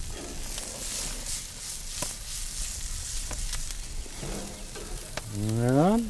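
Food frying on a wood-fired cooking stove, a steady sizzle with scattered small pops and crackles.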